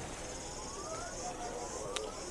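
A faint, distant tsunami warning siren sweeping upward in pitch twice, over a steady high-pitched insect trill and outdoor background noise.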